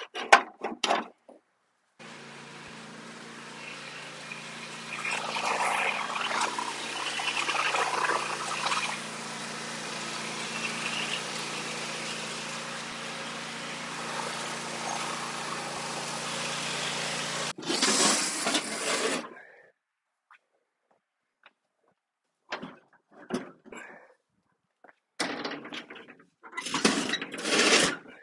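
Simplicity Regent riding lawn tractor's engine running steadily while the tractor is driven; it cuts off suddenly. After a short pause come several short scraping knocks as the mower deck is shoved across the concrete floor under the tractor.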